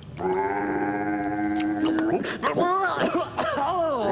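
A voice holding one long, steady note for nearly two seconds, then a run of wordless vocal sounds that wobble up and down in pitch.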